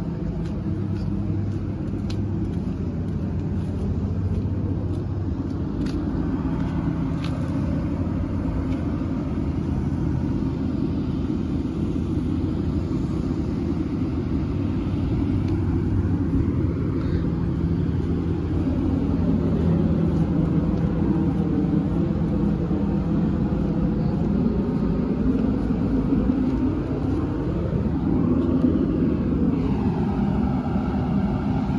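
A 2014 Thomas C2 school bus's Cummins ISB 6.7 inline-six turbodiesel idling steadily, its low rumble a little louder in the second half.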